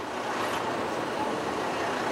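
Steady road-vehicle noise, swelling in at first and then holding level.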